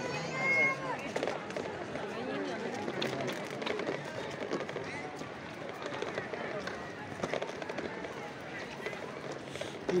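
Park ambience: faint voices of passers-by and footsteps on a stone-paved path.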